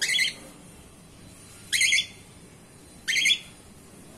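A cockatiel giving three loud, high-pitched calls, each about a third of a second long, spaced roughly a second and a half apart.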